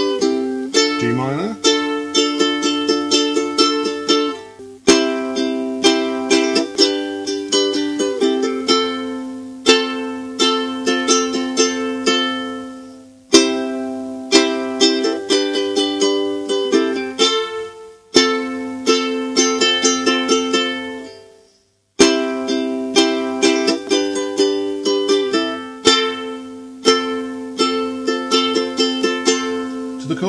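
A ukulele strummed slowly and rhythmically through the chords C, G, D minor and F. Several times a chord is left to ring out and fade, once almost to silence about two-thirds of the way through.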